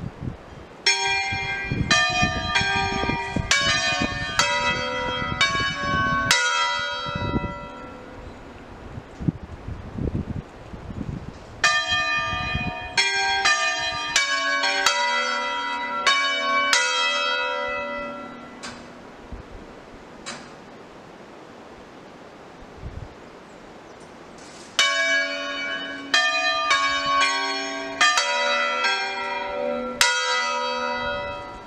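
A four-bell church peal tuned on B (Si3), rung as a solemn concerto: the swinging bells strike in quick tuned sequences. Three runs of overlapping strikes each ring out and fade, with quieter gaps between them.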